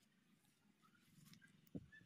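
Near silence, with one faint short thump near the end.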